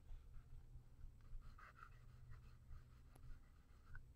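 Faint pencil strokes scratching on drawing paper as a drawing is shaded, over a low steady hum.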